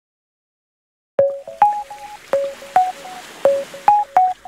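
Silence, then about a second in a soft melody of short, sharply struck notes begins, a few notes a second.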